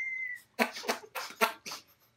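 Men laughing hard without words: a thin high-pitched squeal of laughter that fades out in the first half second, then a run of short breathy gasps of laughter.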